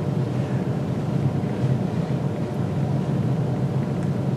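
Steady low hum with a faint hiss over it, unchanging throughout, with no speech or sudden sounds.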